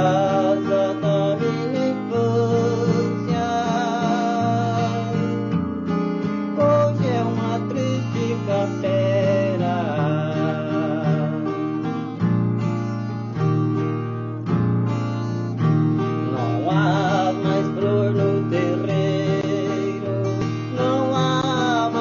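A man singing a Minas Gerais roots (música caipira) song, accompanying himself on acoustic guitar; his held notes waver with vibrato over the steady plucked accompaniment.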